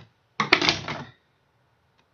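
A brief clatter of small metal tools being handled, with a sharp click near its start, lasting about half a second.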